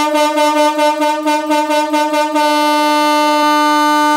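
Aftermarket marine horn fitted under the hood of a Mitsubishi TR4, mounted facing downward, sounding one long continuous blast. The tone flutters rapidly for about the first two seconds, then holds steady.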